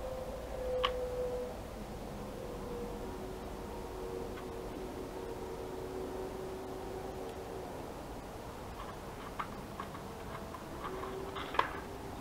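Small metal clicks of jewelry pliers and jump rings being handled: a few scattered ticks, the sharpest near the end, over a faint steady hum.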